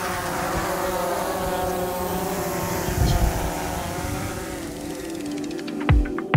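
Quadcopter drone's propellers spinning in flight just after takeoff: a steady, insect-like buzzing whine of many tones that wavers slightly in pitch. A low thump comes about halfway through.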